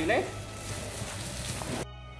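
Steady hiss of background noise with a faint low hum, after a few words of speech at the start; the hiss cuts off abruptly near the end.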